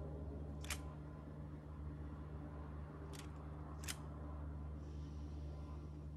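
Three short, sharp clicks over a low, steady hum: one just under a second in, then two more about three and four seconds in.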